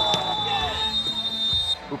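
A referee's whistle: one long, steady high-pitched blast that stops sharply just before the commentary resumes.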